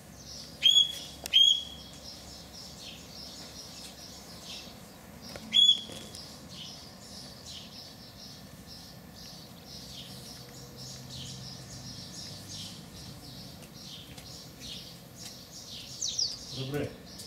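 Birds calling: three loud, short chirps that sweep sharply up and then hold one note, two close together about a second in and one more near six seconds, over steady faint twittering of many birds.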